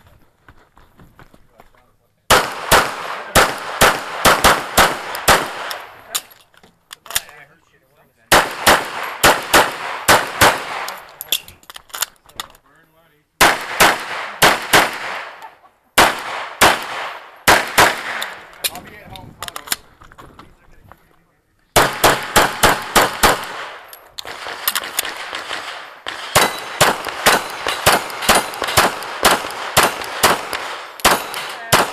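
SIG P226 pistol fired in fast strings of shots, about three or four a second, broken by short pauses, with steel targets ringing when hit.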